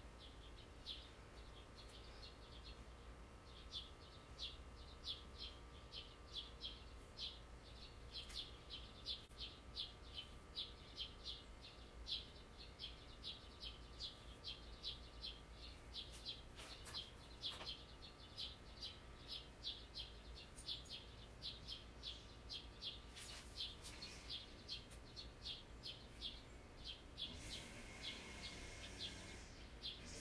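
Faint, evenly repeated high chirps from a bird, about two to three a second, going on throughout.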